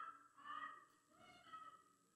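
Near silence in a large hushed chamber, with faint, distant voices.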